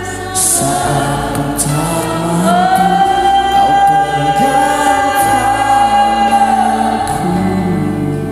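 Christian worship song sung by a woman into a microphone with several other voices, over instrumental accompaniment. About a third of the way in, one note is held for some four seconds.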